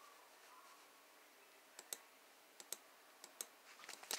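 Near silence with three faint pairs of short clicks in the second half.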